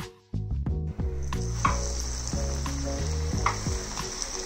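Breadcrumb-coated minced-meat and sausage rolls sizzling in hot oil in a frying pan, the sizzle starting about a second in and running steadily. Background music with a beat plays underneath.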